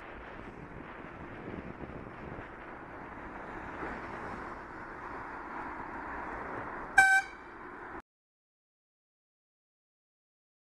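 Steady wind and road noise on a moving bicycle, broken about seven seconds in by one short horn toot. The sound cuts off abruptly about a second later into silence.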